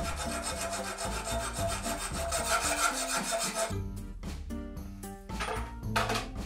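Hand hacksaw cutting a steel nail clamped in a bench vise: quick back-and-forth strokes of the blade on metal, which stop a little past halfway.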